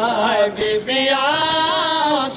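A man's voice chanting a noha, a Shia mourning lament, in long wavering held notes, with two short breaks for breath near the middle.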